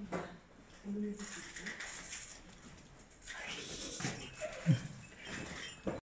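People's voices talking intermittently, with one short, loud vocal sound falling in pitch about three-quarters of the way through.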